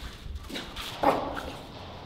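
A small puppy barking in play: two short barks, the second and louder one about a second in.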